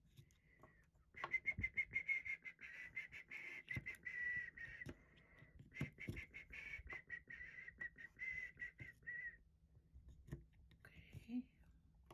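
Plastic tee pegs clicking and knocking against a wooden triangle peg-game board as they are pulled out and set into its holes. A high, thin whistling tone, held with a slight waver, runs alongside from about a second in until near the end.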